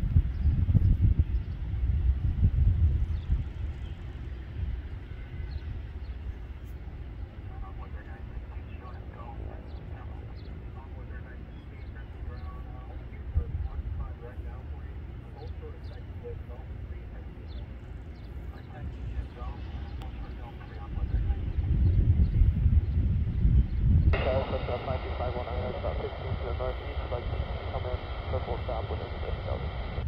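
A low, gusty rumble, loudest in the first few seconds and again a little past the middle. About 24 seconds in, an air traffic control radio scanner opens with a sudden hiss and a garbled, unclear voice.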